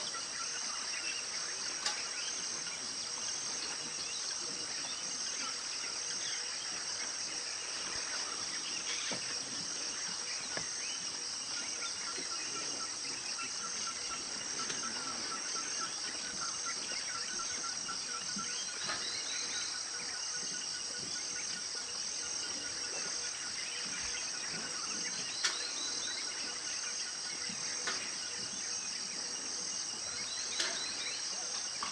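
A steady, high-pitched chorus of insects in tropical forest, running without a break. Runs of short, repeated chirping calls sit over it in the middle and later part, with a couple of brief sharp clicks.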